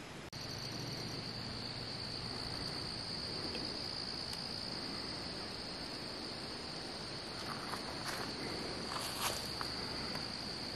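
Forest insects trilling, one steady unbroken high-pitched drone, which comes in after a brief dropout just after the start. A few short rustles or footsteps near the end.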